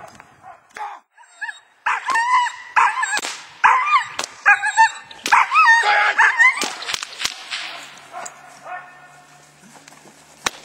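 A five-and-a-half-month-old puppy barking and yelping in a rapid run of short, high calls during defence (bite-work) training, with two sharp clicks about seven seconds in.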